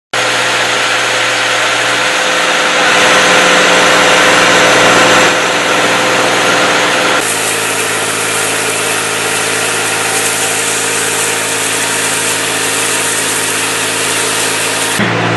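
High-pressure water jet hissing as it blasts paving tiles clean, over the steady drone of the motor-driven pump that feeds it. The engine note changes abruptly about seven seconds in.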